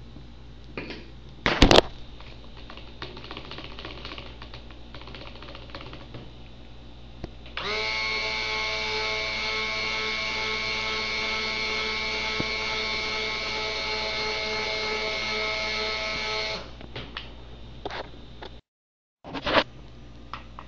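Stick blender (hand immersion blender) running steadily for about nine seconds in thick soap batter, blending in the shea butter superfat after trace, then switched off. Before it starts there are a few light clicks and knocks.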